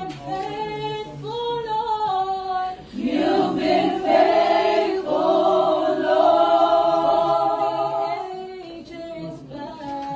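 A group of women singing a worship song together, unaccompanied, several voices holding long notes. The singing swells louder about three seconds in and softens near the end.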